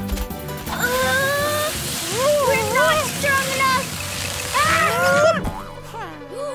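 Cartoon soundtrack: background music under wordless, wavering vocal cries from the animated characters, ending in a short thump about five seconds in.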